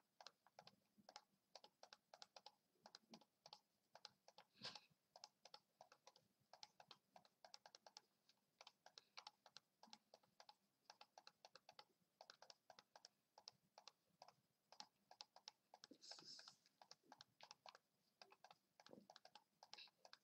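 Faint, rapid computer mouse clicks, several a second in a quick steady stream, each click picking a chessboard square in a timed coordinates drill.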